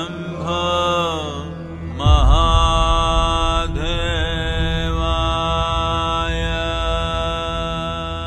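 A voice chanting a mantra over devotional music: two short sliding phrases, then about two seconds in a deep drone comes in and the voice holds one long, steady note.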